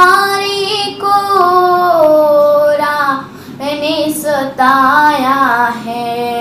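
A girl singing a Rajasthani bhajan, drawing out long notes that slide and waver, with a short breath about three seconds in.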